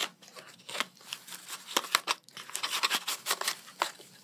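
A cardboard box of disposable nitrile gloves being handled and a blue nitrile glove pulled out of it: a run of short crinkling, scratchy rustles, busiest in the second half.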